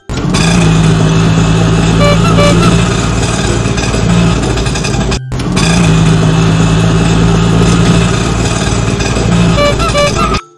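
Motor vehicle engine running steadily, played as a sound effect in two runs of about five seconds with a short break halfway.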